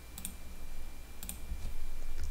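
A few light clicks, one early and a pair about a second later, over a low steady hum.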